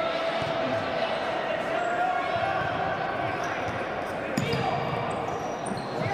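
Futsal being played on a wooden indoor court: the ball is kicked and bounces on the floor, with a sharp knock about four and a half seconds in, over players' and spectators' shouts echoing in a large sports hall.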